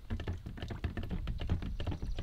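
A drill mixing rod turned by hand in a plastic measuring cup of liquid fertilizer mix, knocking against the cup's sides in quick, irregular clicks and taps.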